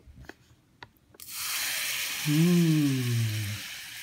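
Water poured from one plastic cup into another over baking soda and citric acid powder, starting about a second in with a sudden steady hiss of pouring and fizzing as the powders react. A few light plastic clicks from handling the cups come before the pour.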